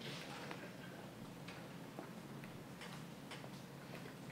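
Room tone with a steady low hum, a brief rustle at the start, and scattered faint clicks at irregular intervals.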